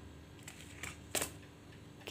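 Mostly quiet room tone with a single sharp click a little past a second in: a plastic bowl of rice knocking as it is picked up from the tiled surface.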